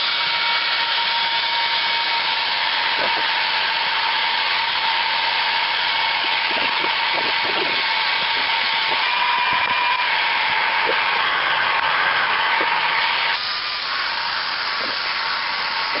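Two handheld hair dryers running, a steady rush of air with a motor whine, blowing hot air onto a dented plastic car bumper cover to soften it. About four-fifths of the way through, the sound drops a little and the whine changes as a dryer shifts.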